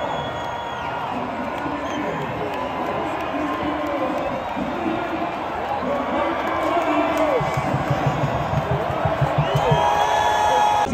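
Packed football stadium crowd cheering and shouting at the final whistle of a home win, a steady roar of many voices with individual shouts and whoops rising out of it, growing a little louder near the end.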